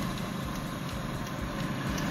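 Steady background noise with no distinct sound events: a low, even ambient hum in the pause between speech.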